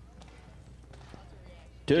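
Faint hoofbeats of a horse galloping on soft arena dirt over a steady low hum. Near the end an announcer's voice cuts in loudly.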